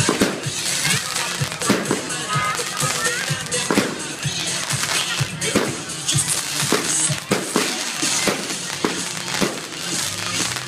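Aerial fireworks bursting, with sharp bangs every second or so and crackling, over music and crowd voices.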